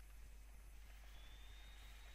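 Near silence: faint recording hiss and a low steady hum, with a faint high steady tone coming in about a second in.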